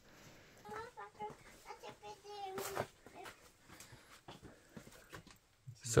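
Faint, distant voices with a fairly high pitch, heard from about a second in until near the middle, over a quiet background.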